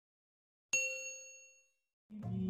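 A single bell-like ding sound effect, the notification-bell chime of a subscribe-button animation, striking under a second in and fading away over about a second.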